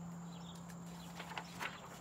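Pages of a paperback picture book being turned: a few faint, soft paper rustles and taps in the second half, over a steady low hum that fades out about one and a half seconds in.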